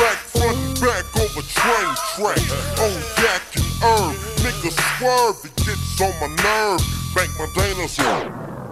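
Chopped and screwed hip hop: a slowed-down track with a deep, pitched-down rap vocal over a heavy bass line and drums.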